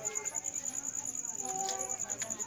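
Crickets chirping in a steady, evenly pulsed high-pitched trill, with faint voices in the background.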